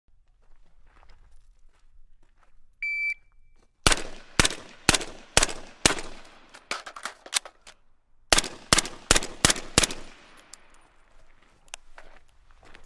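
A shot timer beeps once, then a suppressed AR-style rifle fires five shots about half a second apart. After a pause of about two seconds for a reload, it fires five more shots slightly faster.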